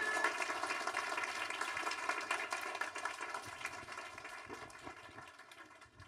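Audience applauding, fading out gradually.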